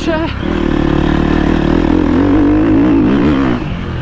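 KTM motocross bike engine pulling under smooth, gentle throttle, its pitch holding steady, then rising and wavering a little before easing off near the end.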